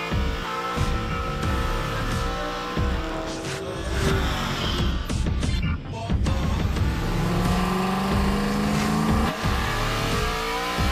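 Electronic music with a pulsing beat, mixed with race car engines revving and tyres squealing in a drift.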